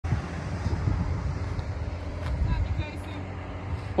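Steady low outdoor rumble of wind on the microphone and road traffic by a highway shoulder. Faint voices come in about two and a half seconds in.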